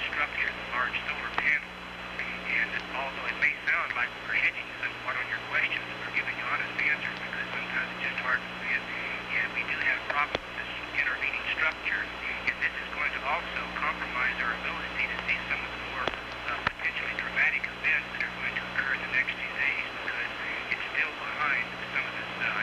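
An astronaut's voice coming over the space-to-ground radio link, thin and narrow-band, with a steady low hum beneath it.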